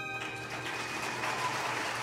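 The last held notes of a song stop within the first half-second, and applause from an audience follows as a dense, even clatter of many hands.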